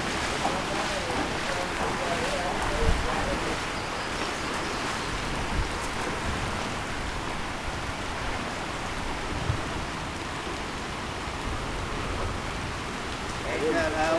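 Steady hiss of rain falling on floodwater, with faint voices in the first few seconds and a few brief low bumps.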